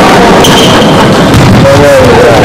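Overloaded, distorted din of an echoing sports hall during a futsal game: players' and spectators' voices over a dense noise, with a voice rising clearly near the end.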